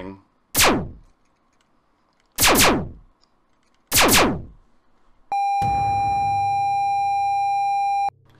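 Sci-fi phaser (ray gun) sound effects: three quick zaps that each drop sharply in pitch, then a steady electronic buzzing tone from about five seconds in until the end.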